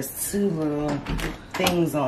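A person talking, with a short knock right at the start as the printer's hinged top lid is lifted.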